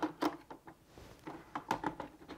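A handful of small plastic clicks and knocks as the lid of a Bosch Tassimo Style coffee machine is lowered and pressed shut over a pod.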